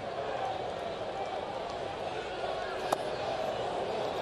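Steady murmur of a ballpark crowd, with a single sharp pop about three seconds in as a pitched baseball lands in the catcher's mitt.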